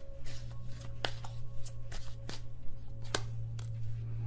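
A deck of tarot cards being shuffled by hand: a run of irregular light snaps and flicks over a steady low hum.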